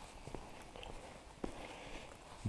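Faint footsteps on stone paving: two soft footfalls about a second apart over a quiet background.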